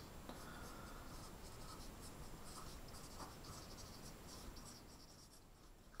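Dry-erase marker writing on a small whiteboard: faint, irregular stroke-by-stroke scratching that stops about five seconds in.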